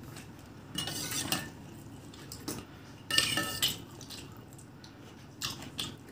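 A steel spoon scraping and clinking in a stainless-steel bowl while scooping up curd raita, with a ringing metallic tone. It comes in three bursts: one about a second in, a louder one about three seconds in, and a shorter one near the end.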